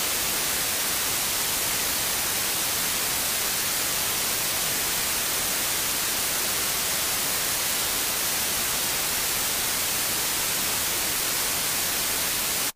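Steady, loud white-noise static hiss, even and unbroken, filling the sound track while the courtroom audio is muted.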